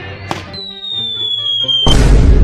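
Cartoon falling-bomb sound effect: a single whistle slowly falling in pitch for over a second, ending in a loud explosion boom near the end, laid over background music as the hit shuttlecock comes down. A sharp crack sounds just before the whistle starts.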